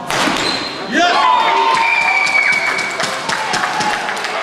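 A badminton racket smacks the shuttlecock right at the start, then about a second later spectators break into loud shouting and cheering, many voices at once, with some high, held calls.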